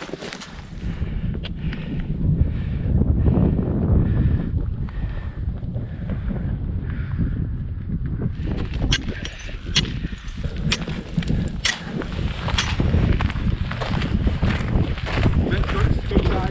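Wind buffeting the microphone in a low, continuous rumble. In the second half it is joined by sharp crunching steps on frozen, wind-crusted snow.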